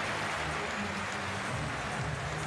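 Steady background noise of a crowd in an indoor athletics arena, with a low hum underneath.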